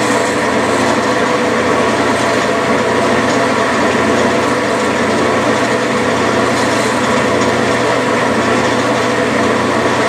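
A metal lathe running steadily while a high-speed steel tool takes a light finishing pass on a soft lead bar. The drive gives a constant hum made of several fixed tones, with no knocks or chatter.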